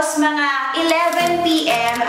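A woman's voice in a sing-song, sung-sounding delivery, with long held notes, over background music.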